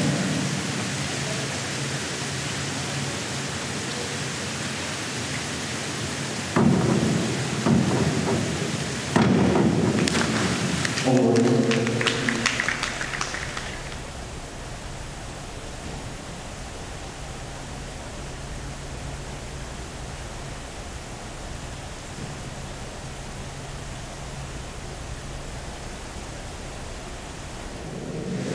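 A springboard dive in an indoor pool hall, over a steady hiss of hall noise. About six and a half seconds in there are sharp bangs from the diving board, then the splash of the entry about nine seconds in, and a voice briefly after it. After that only quieter steady hall noise with a low hum is left.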